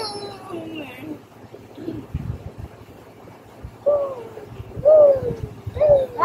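A person's voice: a trailing sound from the laughter before it dies away in the first second, then two loud falling vocal sounds about a second apart near the end.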